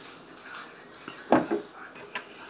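A woman eating off a fork, with one short, loud vocal sound without words about a second and a half in.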